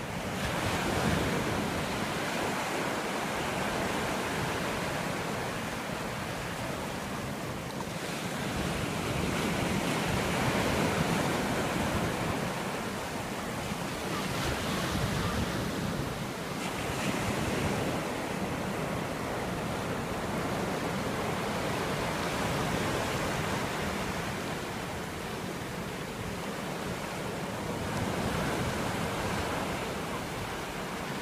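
Ocean surf breaking and washing up a shallow sandy shore: a steady rushing wash that swells and eases every several seconds as each wave runs in.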